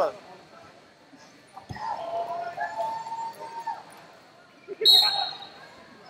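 A referee's whistle blowing once, short and shrill, about five seconds in: the start of the wrestling period. Before it come faint voices from around the hall and a single knock.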